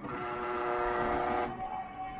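Automatic gate's electric motor running under test with a steady whine for about a second and a half, then stopping; the gate is working again after the jammed motor was freed.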